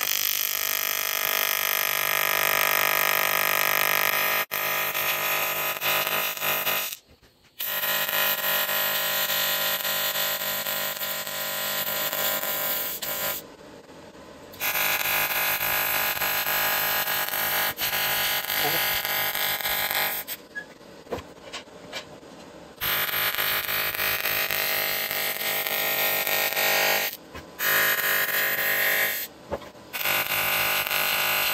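AC TIG welding arc buzzing steadily on an aluminum tank while cracks are welded. The arc stops and restarts several times, with short breaks in the buzz.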